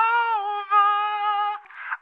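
A voice singing the drawn-out last word "over" of a comic song line, a high note held for about a second and a half with a slight dip partway.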